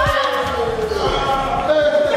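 People's voices calling out, one drawn-out call sliding down in pitch, over low thumps that stop about a second and a half in.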